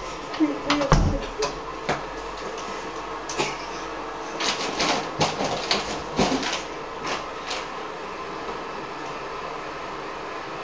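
Indistinct low voices mixed with short clicks and rustles of people moving close by, in two bunches: one near the start and one around five to six seconds in, with steady background hiss between them.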